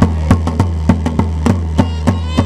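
A large rope-tensioned double-headed bass drum beaten with a stick in a steady beat of about three strokes a second, over a steady low drone. A high wooden pipe comes in near the end.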